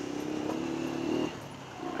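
Honda CG 125 Cargo's air-cooled single-cylinder four-stroke engine running at a steady pitch while riding, dropping away just over a second in.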